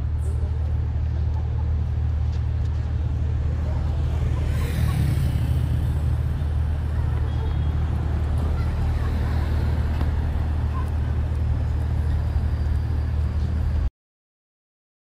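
City traffic ambience: a steady low rumble of road traffic, with a brighter swell about five seconds in, like a vehicle passing.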